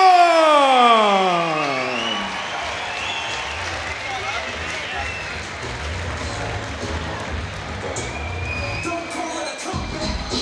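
A ring announcer's long drawn-out shout of the fighter's name over the arena PA, sliding down in pitch and ending about two seconds in. Crowd cheering and applause follow over walkout music with a low bass.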